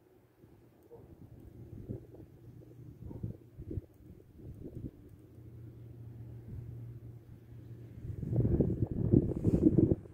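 Wind buffeting the microphone in low, uneven gusts, over a faint steady low hum. About eight seconds in the gusts grow much louder.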